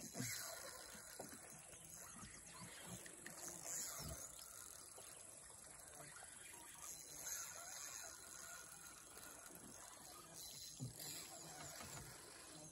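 Quiet outdoor ambience: a faint, steady, high insect drone, with a few soft knocks.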